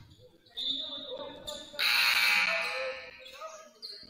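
Basketball gym during a stoppage, then a loud buzzy horn sounding for about a second near the middle, typical of the scorer's-table horn that signals a substitution.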